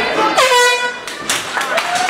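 An air horn gives one loud blast of about half a second, a steady tone that dips slightly in pitch as it starts, of the kind used to signal the end of a round in an MMA bout. Crowd voices are heard around it.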